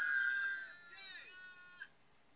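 A woman's high-pitched held squeal, then a short falling whimper about a second in.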